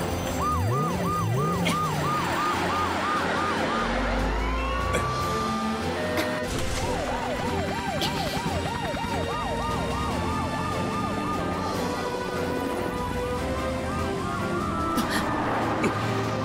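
Animated rescue-vehicle sirens yelping in fast rising-and-falling wails, about three a second, in two runs with a single upward siren sweep between them, over background music. A low rumble is heard around four to six seconds in.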